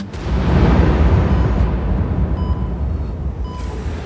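A loud rumbling whoosh, an added sound effect, starts suddenly and fades away over about three and a half seconds.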